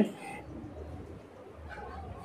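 Faint bird calls over a quiet background.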